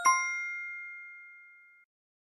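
Quiz 'correct answer' chime sound effect: a bright bell-like ding that rings out and fades away over about a second and a half.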